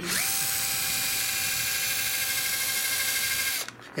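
Cordless drill spinning up and running at a steady whine as it bores a pilot hole through pegboard into a wooden frame board, stopping shortly before the end.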